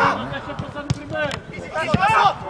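Players shouting to each other on a football pitch, with a few sharp thuds of a football being kicked, the loudest just before the end.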